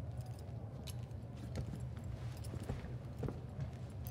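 Low steady rumble of a scene's background ambience from an animated episode's soundtrack, with scattered small clicks and light clinks.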